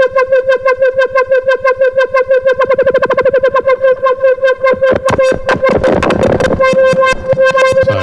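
Korg MS-20 analog synthesizer holding one steady note, with the sample-and-hold circuit driving its low-pass filter so the tone is chopped into rapid, even pulses. The pulses speed up midway, and about five seconds in the sound turns harsh and noisy for a couple of seconds: nasty.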